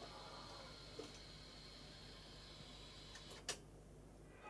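Quiet room with a faint steady hum, a small click about a second in, and one sharper click about three and a half seconds in as a piano-key transport button on a Philips N1700 video cassette recorder is pressed down.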